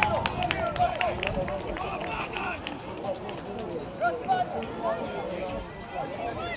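Voices of players and onlookers shouting and calling across an outdoor football pitch, with a scatter of sharp knocks in the first couple of seconds.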